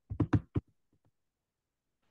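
A quick run of about five short knocks in the first half second or so, then quiet.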